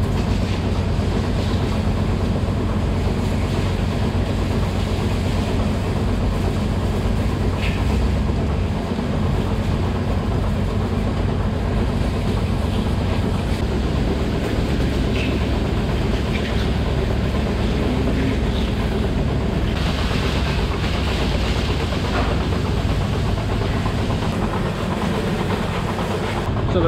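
Hose spraying water over a row of milker units (claws, liners and milk hoses), a steady hiss of spray over the continuous low hum of the milking system running.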